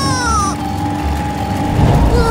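A high-pitched cartoon character's cry, its pitch rising and then falling, ending about half a second in. Background music with steady held notes plays under it and on after it.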